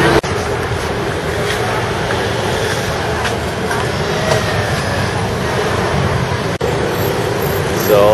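Busy city street ambience: a steady wash of road traffic mixed with indistinct voices of passers-by. It cuts out briefly twice, just after the start and about two-thirds of the way through.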